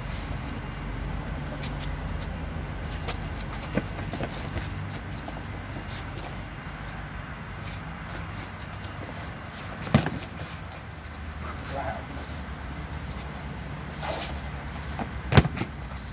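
Inflatable plastic toy hammers striking in a mock fight: a few sharp hollow knocks, a small one about four seconds in and two loud ones about ten seconds in and near the end, over a steady low outdoor rumble.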